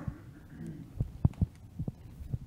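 Footsteps on a lecture-hall floor: a few short low thumps in quick succession, the loudest about a second and a quarter in.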